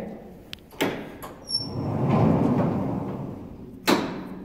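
A sliding window panel being pushed up: a couple of light knocks and a brief squeak, a sliding rumble lasting about two seconds, then a sharp clack as it stops near the end.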